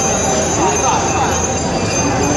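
A crowd of cyclists riding past, with many voices talking and calling out over the steady noise of the passing bicycles.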